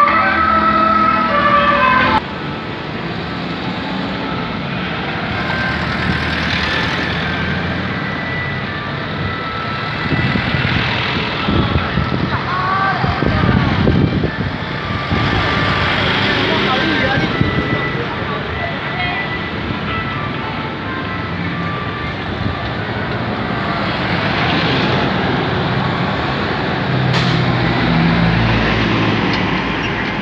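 Loud music cuts off suddenly about two seconds in. Then comes busy street noise from a procession: truck engines passing, voices, and faint music from a band riding on a truck.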